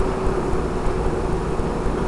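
Steady low rumble with a faint, steady hum over it and no distinct events.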